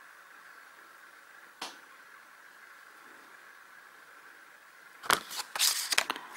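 Needle and thread worked through plastic cross-stitch canvas held in the hand: one light click, then from about five seconds in a run of loud, scratchy rustles and clicks as the canvas is handled and the thread drawn through.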